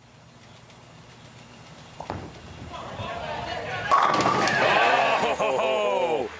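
Bowling ball rolling toward the pins, a sharp crash of pins about four seconds in, and the crowd's shouting and cheering swelling into loud cheers as the ball strikes.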